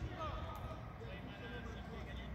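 Faint, distant shouts and calls of footballers on an open pitch during a training drill, heard as short scattered calls over a low outdoor background.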